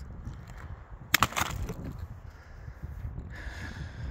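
A sharp crack of loose lava rock about a second in, two quick knocks close together, over a low rumble of wind on the microphone.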